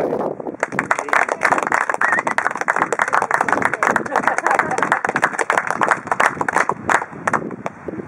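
A small group clapping their hands in applause: a dense patter of claps starts about half a second in, runs for several seconds and thins out to a few last claps near the end.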